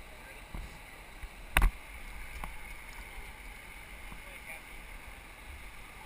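Steady rush of river water around a kayak on the Youghiogheny, with one sharp knock about one and a half seconds in and a couple of faint clicks.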